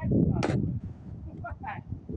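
Wind buffeting the microphone in a loud low rumble that eases after the first second, with one sharp knock about half a second in.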